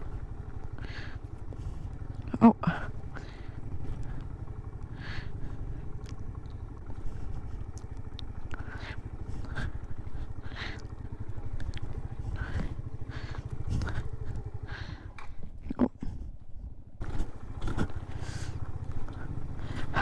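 Suzuki Van Van 125's small single-cylinder four-stroke engine running steadily at low speed on a rough dirt track. A few brief sharp sounds sit over it, the loudest about two and a half seconds in.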